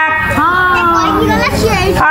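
A high-pitched voice drawing out a long sliding note, then wavering quickly near the end, in the dramatic sung-spoken delivery of Odia pala.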